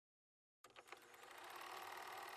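Near silence: a few faint clicks, then a faint hiss that slowly rises.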